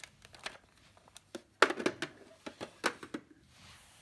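Clear plastic organiser drawer and the plastic-wrapped pens in it being handled: a string of light plastic clicks and knocks with some crinkling of packaging, the loudest knock about a second and a half in, as the drawer is pushed shut.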